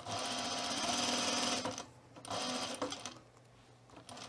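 Juki industrial sewing machine stitching in two runs: a steady run of almost two seconds, a short pause, then a brief second run before it stops.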